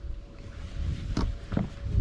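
Wind rumbling on the microphone over open water, with a faint steady hum and two brief sharp sounds about a second and a second and a half in.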